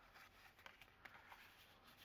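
Near silence, with a few faint soft ticks and rustles of paper journal cards being handled.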